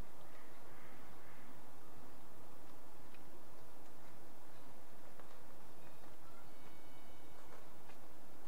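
Steady outdoor background noise with a few faint clicks. About seven seconds in there is a short, faint, high-pitched call.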